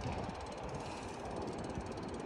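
Steady wind rush on the phone's microphone with a low road rumble from riding a bicycle along a paved street.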